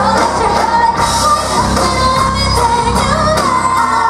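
A live band plays with several women singing together into microphones, over drums and electric guitar. The voices hold long, wavering notes.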